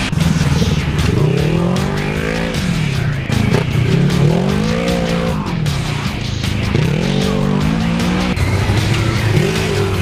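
Racing side-by-side UTV engines revving hard and backing off in turn as the machines pass one after another, the pitch rising and falling several times.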